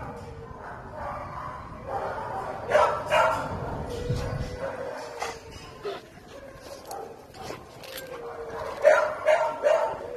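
Dogs barking in play: two barks about three seconds in and a quick run of three near the end.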